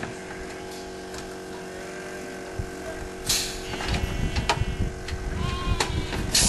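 Sheep bleating while the metal gates of a sheep weigh-and-draft crate clank as the animals pass through. There is a short hiss about three seconds in, and more clanks come near the end.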